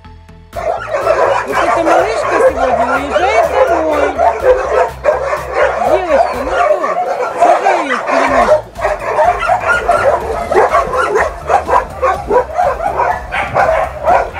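Many dogs barking and yelping at once in a dense, continuous chorus that starts about half a second in, over background music.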